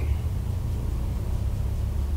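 A steady low background rumble with no distinct events in it.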